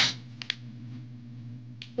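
One sharp tap and, about half a second later, two light ticks from objects being handled on a tabletop during a search. A steady low hum runs underneath.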